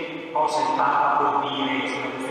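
A man speaking at a lecture into a microphone: speech only.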